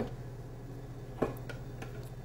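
Quiet kitchen room tone with a steady low hum. A light tick comes about a second in and a couple of fainter ones follow, as a ceramic bowl of flour is tipped against the plastic food-processor bowl and the flour is poured in.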